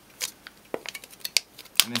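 Thin sheet steel from a drink can clicking as it is bent at a fold by hand, four sharp clicks spaced across the moment; the fold flexes back without splitting.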